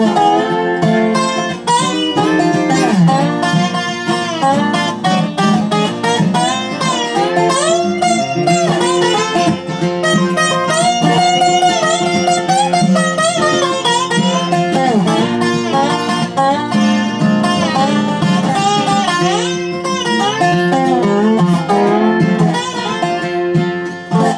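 Instrumental break in a bluegrass tune: a square-neck resonator guitar (dobro) played lap-style with a steel bar, its notes sliding and bending, over an acoustic guitar's steady strummed rhythm.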